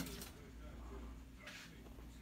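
Quiet room tone with a faint steady low hum. There is a soft click at the start and a brief soft rustle about one and a half seconds in.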